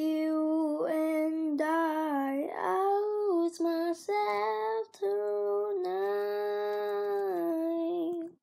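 A young girl singing, holding long drawn-out notes with no clear words. The last note is held for about two seconds and ends just at the close.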